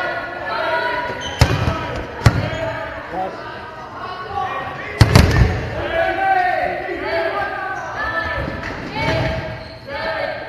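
Dodgeballs striking hard during play in a gym hall: three sharp smacks, the loudest about five seconds in, over players' voices calling out throughout.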